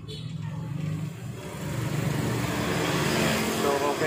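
Sony LCD TV's speakers coming up as the volume is raised: a steady noisy rush over a low hum, louder in steps about a second in and again about two seconds in.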